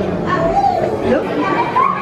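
Chatter of other visitors in an indoor public space, with children's voices among it.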